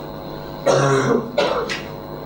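A man coughs, clearing his throat in two short bursts about a second in.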